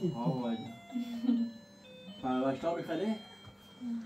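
People talking in a small room, with a faint high-pitched electronic beeping tune of short notes playing underneath.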